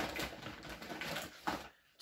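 Rustling of a woven plastic shopping bag and cardboard boxes as hands rummage inside it and lift out two boxed rolls of kitchen foil, with a sharp knock at the start and another about a second and a half in.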